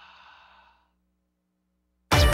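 A soft breathy sigh, an exhale that fades out within the first second, followed by dead silence.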